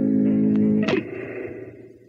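Solo electric bass holding a ringing chord. About a second in, a sharp percussive attack cuts it off, and what is left rings down and fades out, ending the solo.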